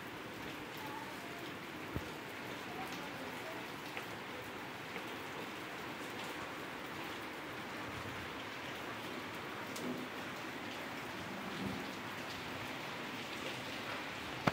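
Steady rain falling on leaves and wet paving stones, an even hiss with a few scattered drips ticking.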